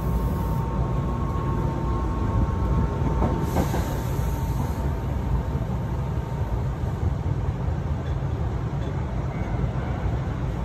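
Hankyu commuter train running steadily, heard inside the passenger cabin as a constant low rumble of wheels on rails. A faint steady tone in the running noise fades out about three and a half seconds in.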